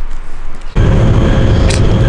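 Wind buffeting the microphone, then an abrupt change to the louder, steady rumble and hum inside a moving tram.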